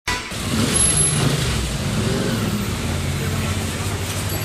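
Car engine running amid street traffic noise, forming the opening of a song recording before the music comes in.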